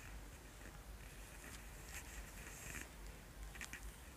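Faint soft rubbing and rustling of hands massaging a client's shoulder and upper chest, with a few small clicks near the end.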